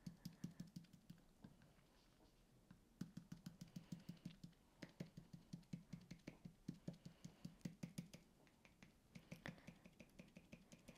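Foam ink-blending applicator dabbed over and over onto a plastic stencil laid on card, faint soft taps about five or six a second in runs with short pauses.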